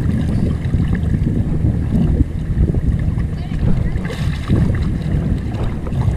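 Wind buffeting the microphone in a fluctuating low rumble, over choppy shallow water lapping and sloshing.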